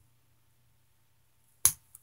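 Near silence, then a single sharp snip of scissors cutting a woven-in yarn end about one and a half seconds in, with a faint click just after.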